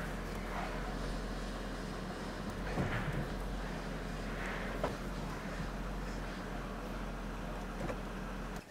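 A VW Touareg's 4.2 TDI V8 diesel engine idling with a steady low hum, and a couple of faint brief knocks partway through.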